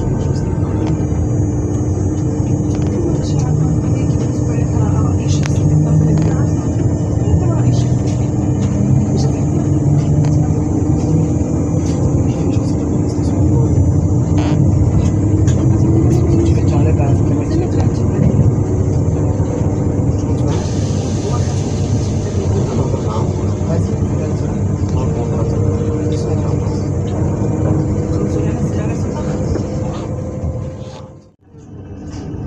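Z2N double-deck electric multiple unit Z 20834 standing still with its onboard equipment running: a steady hum carrying a few held tones. A high hiss joins about twenty seconds in.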